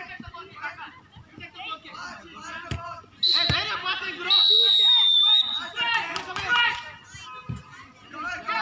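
Referee's whistle: a short blast about three seconds in, then a longer, loud blast a second later. Around it, children shout and a football thuds off boots on artificial turf.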